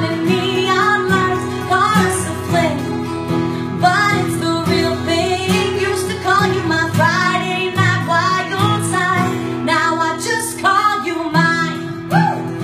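A woman singing a country song with guitar accompaniment, performed live.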